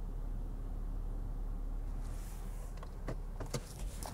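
Car engine running steadily at low speed, heard from inside the car as a low rumble. A faint hiss comes a little past the middle, and a few faint clicks follow near the end.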